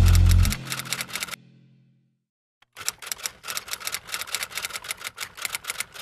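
Intro music ends about a second in, its low tone dying away; after a short gap comes a typewriter sound effect, rapid irregular keystroke clicks lasting about three and a half seconds.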